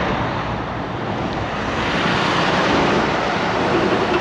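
Steady noise of road traffic passing close by, tyres and engines, growing a little louder as a semi-truck comes by near the end.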